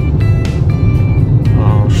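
Steady low road and engine rumble inside a moving car's cabin, with background music of held notes over it.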